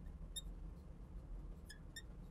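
Marker tip squeaking on a lightboard's glass while writing: a few brief, high squeaks, one about half a second in and two near the end, over a faint low room hum.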